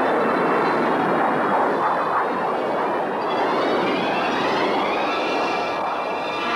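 Rocket launch: a loud, steady rushing noise from the engine's exhaust, joined about halfway through by a whine that climbs in pitch.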